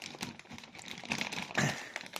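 Plastic fish-store bags crinkling and rustling as they are handled: a dense run of small crackles, with a louder rustle about three-quarters of the way through.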